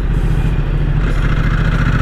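Ducati XDiavel S motorcycle engine running steadily at low revs in second gear at about 25 km/h, with no change in pitch.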